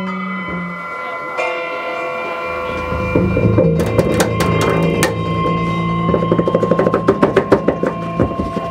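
Live free-jazz improvisation on double bass and drum kit, with held high tones over a low rumble; the drums pick up into a fast run of strikes about six seconds in.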